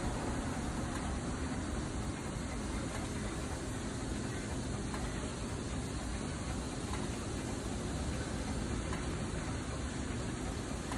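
Fuel dispenser running while it pumps petrol into a car, a steady even noise that does not change.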